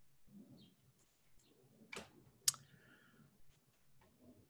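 A few faint clicks from a computer being operated at a desk, the sharpest about two and a half seconds in and followed by a brief faint tone, over quiet room tone.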